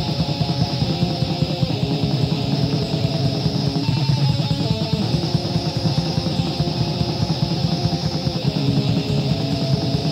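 Raw black metal demo recording: a distorted electric guitar riff over fast, dense drumming, with a thin, hissy lo-fi sound.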